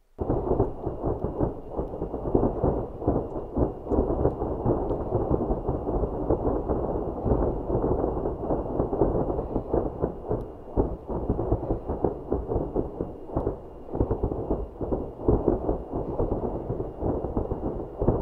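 Loud, continuous rumbling noise that starts abruptly and fluctuates without a break, with a faint steady high whine above it.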